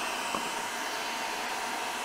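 Steady fan-like whooshing noise with a faint high whine running throughout, and a light click about a third of a second in.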